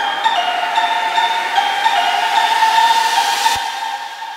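Electronic dance music build-up: a synth melody of short stepped notes over a rising noise sweep that grows brighter and cuts off about three and a half seconds in, leaving the track to drop away briefly.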